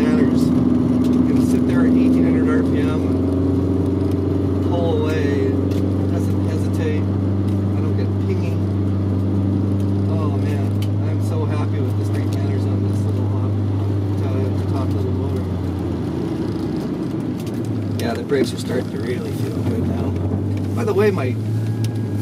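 1983 VW Rabbit GTI's engine and big exhaust droning steadily at low rpm while cruising, heard from inside the cabin. The note eases slightly lower in the first few seconds and changes about three-quarters of the way through as the car slows.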